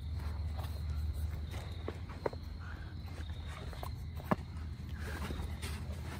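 A few light, sharp clicks and knocks of brake pads and caliper parts being handled, the loudest a little over four seconds in, over a steady low hum.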